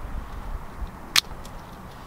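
A single sharp snip of hand bypass pruners cutting through the trunk of a young fig tree, a little past a second in, over a low background rumble.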